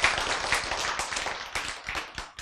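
Audience applause: many hands clapping in a dense patter that thins and fades away over the two seconds, leaving a few separate claps near the end.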